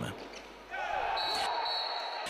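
Handball game sound in a sports hall: a ball bouncing on the court floor amid crowd and player voices, which come up after a quieter first moment. A steady high tone about a second long sounds in the second half.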